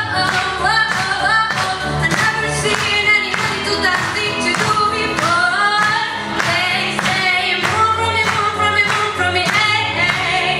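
Female choir singing a pop song live with accompaniment: melodic sung lines over sustained low notes and a steady beat.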